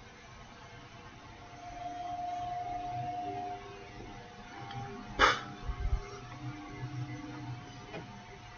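Quiet pipe-smoking sounds: soft draws and puffs on a briar bulldog pipe, with a single sharp click about five seconds in and a faint held tone through the first half.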